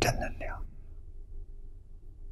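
An elderly man's voice finishes a short phrase in Mandarin in the first moment, then pauses, leaving only a steady low background hum.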